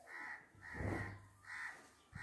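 A crow cawing, three short caws about half a second apart, faint in the background.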